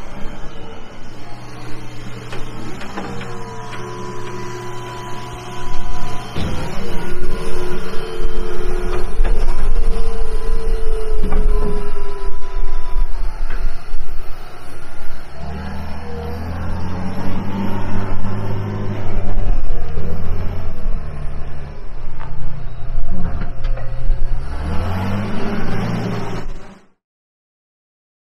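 John Deere 544K wheel loader's diesel engine running as the loader drives and manoeuvres, with higher whining tones coming and going. About fifteen seconds in the engine revs up, then its speed rises and falls in steps.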